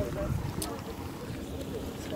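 Wind rumbling on a handheld phone microphone outdoors, with faint voices and a few light footsteps on a dirt road.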